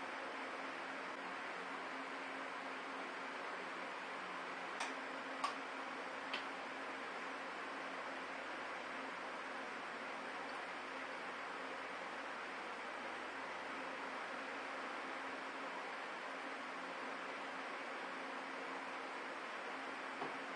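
Three light clicks about five to six seconds in as a plastic vinegar bottle and its screw cap are handled, over a steady faint hiss and low hum.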